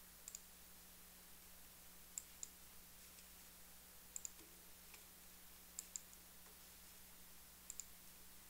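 Computer mouse button clicked five times, roughly every two seconds, each click a quick double tick of press and release, over a faint steady hum.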